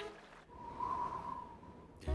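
A faint whistling tone: one held note that starts about half a second in, swells slightly and fades, over a low hiss.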